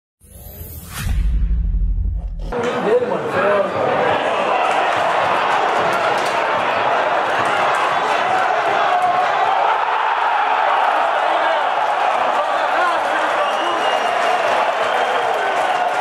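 A short whooshing intro sting with a deep bass hit, then a stadium crowd's massed voices, shouting and chanting steadily through the play of a football match.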